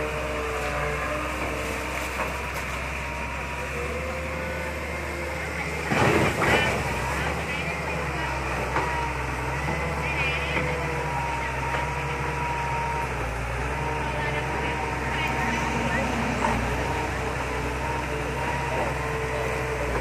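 Long-reach excavator on a barge running steadily, its diesel engine humming with a thin whine over it as the arm swings back from dumping mud and lowers the bucket toward the water. A short louder burst comes about six seconds in.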